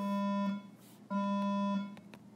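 Electronic buzzer sounding twice: two identical steady buzzes of the same pitch, each about two-thirds of a second long, half a second apart.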